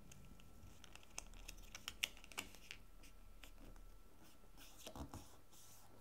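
Faint rustles and a handful of light ticks as a sheet of patterned embellishment paper is folded and creased by hand, the sharpest tick about two seconds in.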